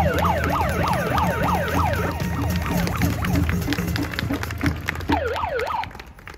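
A siren wailing in fast up-and-down sweeps, about three a second, over a low rumble. It fades somewhat midway and comes back strongly near the end.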